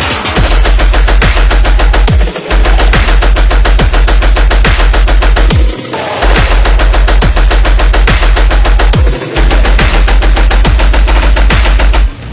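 Hard dubstep drop: very loud, with a heavy continuous sub-bass and a rapid-fire, machine-gun-like stuttering rhythm, punctuated by booming kicks. Brief breaks come at about 2, 6 and 9 seconds in.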